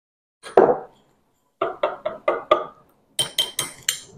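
A spoon stirring creamer into a mug of coffee: a thud about half a second in, then a run of about five quick, even strokes. Near the end come several bright clinks of the spoon against the mug.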